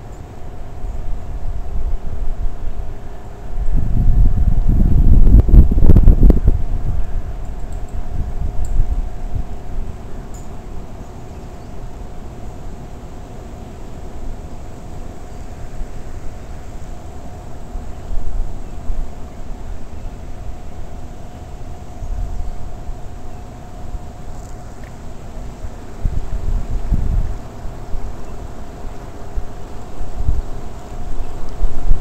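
Wind buffeting the microphone in low rumbling gusts, strongest about four to six seconds in and again near the end, over a faint steady hum.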